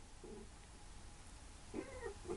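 Near silence: faint room tone, with a couple of brief, faint pitched sounds near the end.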